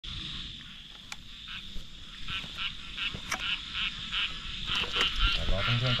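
Frogs calling at night in quick repeated notes, about five a second, over a steady high-pitched drone. A voice starts just before the end.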